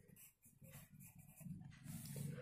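Near silence: faint scratching of a pen writing on workbook paper.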